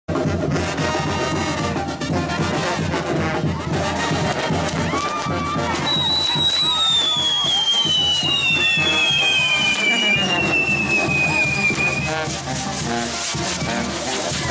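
Lively festival band music with brass and drum, over crowd voices. Midway, two long high whistles slowly fall in pitch, overlapping each other.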